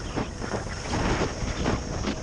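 Wind rushing over an action camera's microphone while skiing downhill, with the skis sliding and scraping over snow; the noise surges unevenly.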